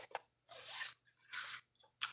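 Paper card sliding out of a cardboard box, two short scraping rustles about half a second and a second and a half in.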